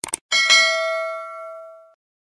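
Two quick mouse-click sound effects, then a bright bell-notification ding that rings out and fades over about a second and a half.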